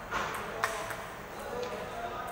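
Table tennis ball knocking back and forth off paddles and table in a rally: a run of about six sharp clicks, the loudest just past half a second in, over the chatter of a crowded hall.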